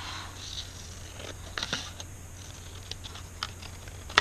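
Scissors snipping through patterned paper in a handful of short, irregular cuts.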